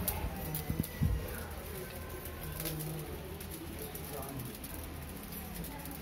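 A bird cooing: a few short, low calls spaced a second or two apart, over a faint low rumble.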